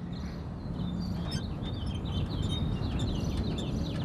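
Birds chirping, with short high chirps repeating from about a second in, over a steady low outdoor rumble.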